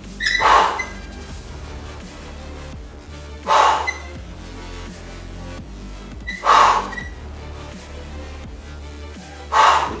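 Four short, forceful exhalations about three seconds apart, one with each curl repetition, over steady background music.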